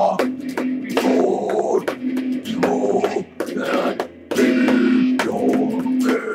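Electric guitar strummed hard through an amp, with two voices singing and yelling wordless 'oh's over it.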